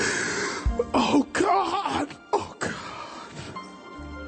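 Slow church worship music with a voice close to the microphone: breathy, cough-like bursts and a loud wavering sung or wailed phrase in the middle.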